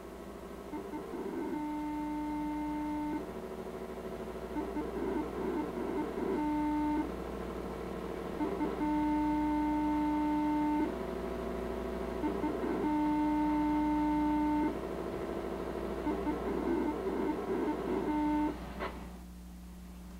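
A digital paging transmission on the VHF band, heard through a Tektronix spectrum analyzer's audio demodulator. It sounds as steady buzzing tones that switch back and forth with bursts of fast warbling data chatter, and it stops about a second and a half before the end, leaving a low hum.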